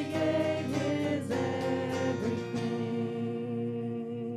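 Church worship band playing, with several women singing in harmony over electric guitar and drums; the voices stop about two-thirds of the way in and a chord is held out, beginning to fade as the song ends.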